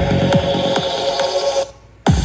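Electronic dance music played loud through a pair of 25 cm full-range loudspeakers rated 700 W, driven by a 1000 W amplifier. The kick-drum beat stops just after the start, leaving a held synth note over a rising hiss. Near the end the music cuts out almost to silence for a moment.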